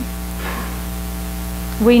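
Steady electrical mains hum with a light hiss in the recording, heard in a pause between spoken sentences, with a faint soft swish about half a second in. A woman's voice starts again just before the end.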